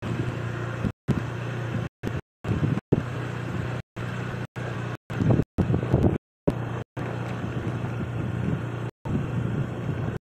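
Car rolling slowly with a steady low engine and road rumble and some wind noise, swelling louder a couple of times. The recording cuts out to dead silence for split seconds about a dozen times.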